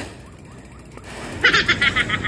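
A low, quiet background for over a second, then a short burst of rapid, high-pitched laughter about a second and a half in.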